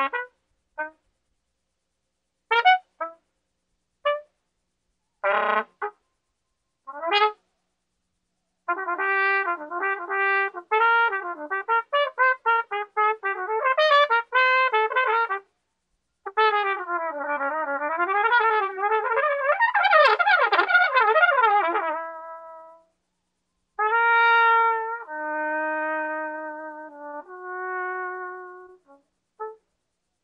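Solo trumpet improvising jazz. It starts with scattered short notes, breaks into fast runs of notes from about nine seconds in, with rapid rising and falling runs in the middle, and ends on a few long held notes.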